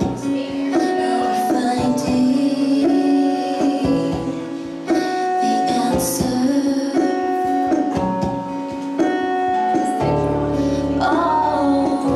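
Live female vocal singing with acoustic guitar, in a song. Strong bass guitar notes come in about ten seconds in.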